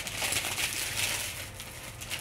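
Clear plastic bag crinkling as a rolled canvas is handled and pulled out of it.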